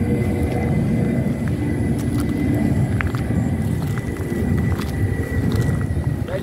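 Wind buffeting the microphone in the open: a steady low rumble with no rhythm. A faint, thin, high steady tone sounds behind it.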